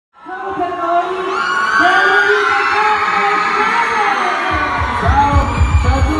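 A large crowd of young fans screaming and cheering. About four and a half seconds in, the heavy bass beat of a pop track over the PA kicks in under the voices.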